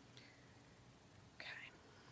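Near silence: room tone in a pause of speech, with one softly spoken "okay" near the end.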